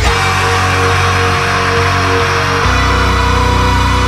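Folk metal song in an instrumental passage: distorted electric guitars and bass hold sustained chords, changing chord about two-thirds of the way through.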